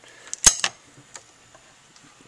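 Break-action shotgun being opened by hand: one sharp metallic click about half a second in, followed by a few lighter clicks.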